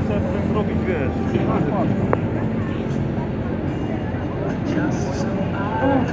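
Semi truck's diesel engine idling with a steady low hum, with people's voices over it.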